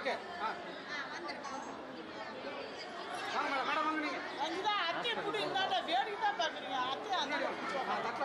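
Several people talking at once: overlapping chatter of a crowd of guests, with no one voice standing out.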